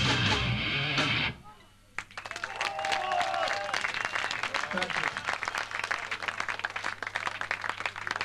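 Live hardcore band of distorted guitars and drums, cut off at the end of a song about a second in. After a brief lull the audience claps and shouts, over a steady low hum.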